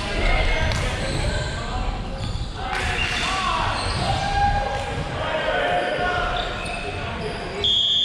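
Volleyball players calling out to each other in a large echoing gym, with a volleyball bouncing on the hardwood floor. A short, high, steady whistle blast sounds near the end.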